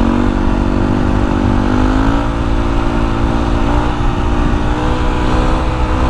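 Yamaha WR450F's single-cylinder four-stroke engine running under way at a steady pace, its pitch rising a little about two seconds in and then holding.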